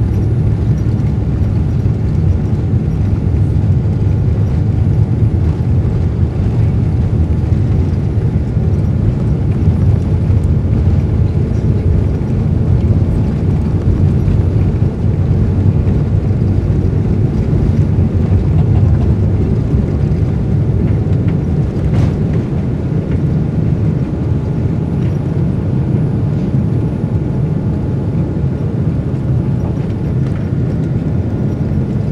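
Steady low roar of a Boeing 787-9's Rolls-Royce Trent 1000 engines and rushing air, heard from inside the cabin at a window seat over the wing during takeoff. A single faint click sounds late on.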